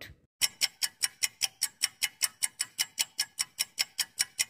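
Quiz countdown timer sound effect: a clock ticking evenly, about five ticks a second, starting about half a second in.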